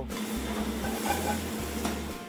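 Food sizzling in a hot pan: a steady hiss that cuts in suddenly.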